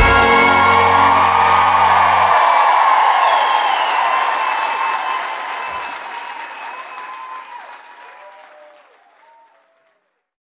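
A live band's final chord rings for about two seconds, then audience applause carries on alone and fades out to silence near the end.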